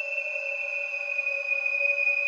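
Held synth drone from the 'Scare Tactics' patch of FrozenPlain's Cinematic Atmospheres Toolkit in the Mirage sampler. A piercing high tone sits over a lower steady tone with faint ringing between them, both sinking very slightly in pitch.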